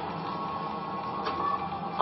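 Steady electronic hum and hiss of a starship bridge's background ambience, a film sound effect, with a few faint steady tones running under it.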